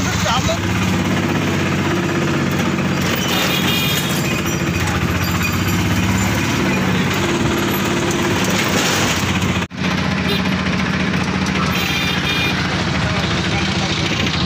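Auto-rickshaw engine running steadily as the three-wheeler drives through traffic, heard from inside the open cab, with a brief break about ten seconds in.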